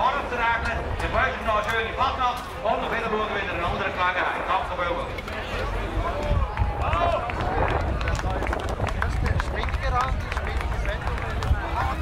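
Men talking in Swiss German outdoors, over a steady low rumble and background crowd.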